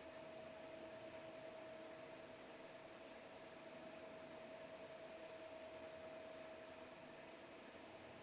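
Near silence: faint steady hiss of room tone, with a faint steady hum.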